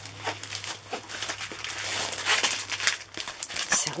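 Clear plastic sleeve and plastic-covered canvas crinkling as a rolled diamond-painting canvas is pulled out and unrolled by hand: irregular crackling, busiest around the middle.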